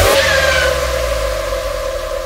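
Electronic dance backing track ending: the beat stops and one held synth tone rings on, slowly fading, with a brief gliding tone about half a second in.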